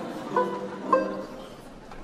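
Banjo plucked in single notes, two clear ones about half a second apart, each ringing and fading.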